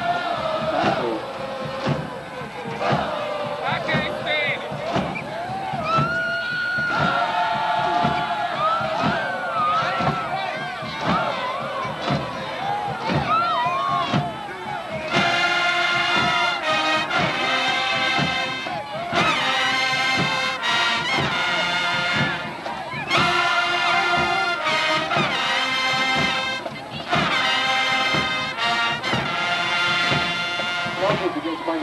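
Marching band in the stands: a steady drum beat under voices chanting and shouting for the first half, then, about halfway through, the brass section comes in with loud held chords, played in several phrases with short breaks between them.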